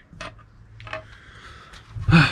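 A few faint, scattered clicks and taps of small objects being handled and set down on a wooden table.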